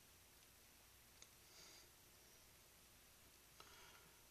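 Near silence: room tone, with one faint click about a second in and faint soft handling sounds of hands pressing a piece of clay onto a clay jug.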